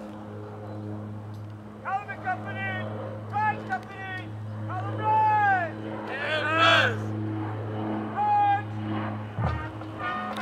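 Drill commands shouted by cadet officers across a parade field: several drawn-out calls one after another from about two seconds in, each rising and then falling in pitch, over a steady low hum.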